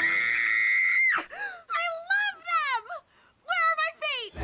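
A girl's high-pitched scream held steady for about a second, followed by a run of wavering, wailing vocal cries broken by a brief pause.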